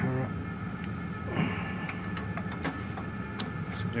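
A few light metal clicks and clinks as the tractor's PTO clutch plates and gears are handled by hand, over a steady low hum.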